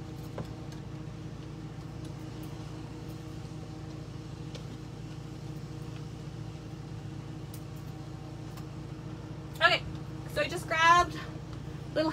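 A steady low mechanical hum from a running machine, with a few faint clicks as clothes hangers are handled. A voice is heard briefly near the end.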